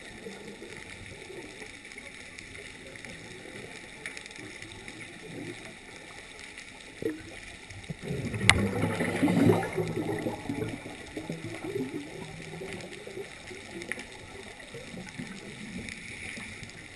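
Muffled underwater noise heard through a submerged camera, with a sharp click about eight and a half seconds in followed by a couple of seconds of louder rumbling, bubbling sound.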